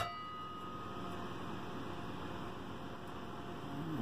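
A single sharp metallic clink that rings on for about a second, from the car amplifier's metal cover as it comes loose and is lifted off; then only faint steady room noise.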